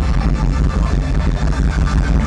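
Live hard rock band playing through a festival PA, picked up from within the crowd: loud and steady, with a heavy bass.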